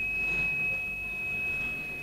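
A steady high-pitched whine, one unchanging tone, over faint hiss in an old 1965 lecture recording. It is a fault of the recording itself, not a sound in the hall.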